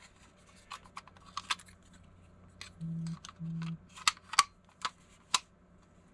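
Light plastic clicks and taps from handling a small plastic weather-station display unit and its battery compartment. About three seconds in come two short, low, steady buzzes a fraction of a second apart.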